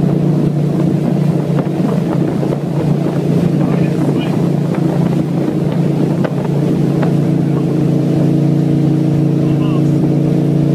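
Towing motorboat's engine running steadily at speed, a loud low drone, with wind buffeting the microphone.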